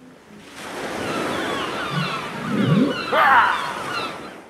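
Outro sound effect of ocean surf swelling up and fading away, with many short, high, falling cries over it and one louder rising cry about three seconds in.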